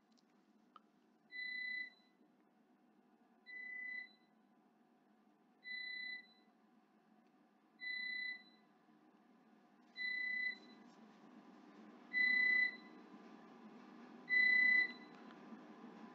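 Short electronic beeps on a single steady high tone, seven of them about two seconds apart, each about half a second long, growing louder toward the end. A faint low hum sits underneath in the second half.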